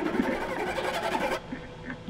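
Noisy handheld camcorder room sound with indistinct voices, cut off abruptly about one and a half seconds in. Quiet, held string notes of background music follow.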